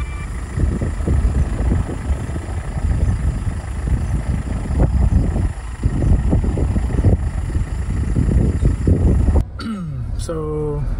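Low, uneven rumbling noise that drops away suddenly near the end.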